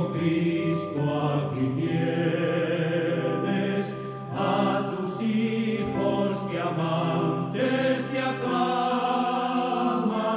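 Background music: a choir singing a religious hymn over a long-held low note, which changes pitch near the end.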